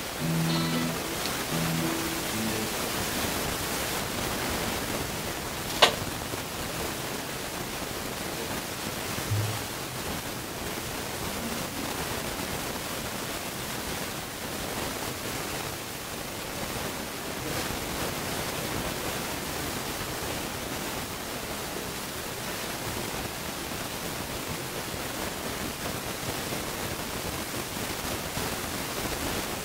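Steady hiss from a poor camera microphone in a live club room, with a few short instrument notes in the first couple of seconds and a brief low note about nine seconds in as the band gets ready to play. A single sharp click about six seconds in.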